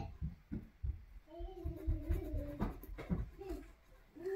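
A child humming softly, the pitch wavering up and down, over a few low knocks and rubbing of drawing on paper in the first second.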